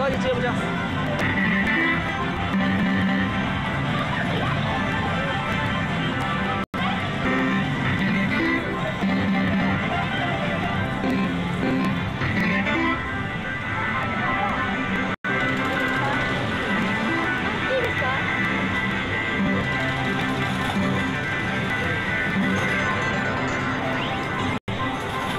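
Pachislot parlour din: loud, steady machine music and electronic jingles with a blur of background voices. The audio cuts out for an instant twice.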